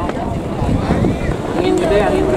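Wind buffeting the microphone, with people calling out in long, drawn-out shouts in the background.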